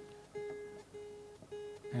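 A plucked string instrument playing softly, repeating one note about twice a second.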